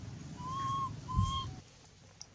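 Two short, clear whistle-like calls, each about half a second long at a steady pitch, with a dull thump during the second call.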